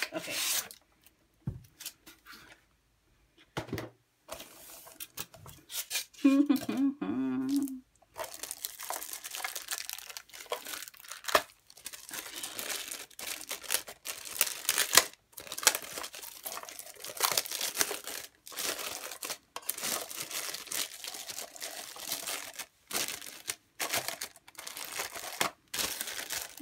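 Clear plastic film wrapped around a small cardboard box crinkling and tearing as hands work to peel it off. There are a few faint rustles at first, and from about a third of the way in it runs as dense, irregular crinkles through to the end. A short laugh comes just before the crinkling takes over.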